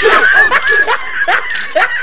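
Young men laughing loudly in quick, repeated bursts, with one high voice held through the first second.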